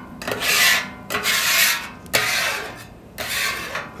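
Hand scraper dragged across the oily steel cooktop of a Blackstone griddle in three long strokes, each just under a second, scraping grease and food residue toward the back to clean it after cooking.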